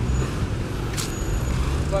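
Low, steady rumble of a car's engine and road noise heard from inside the car, with one short, sharp hiss about a second in.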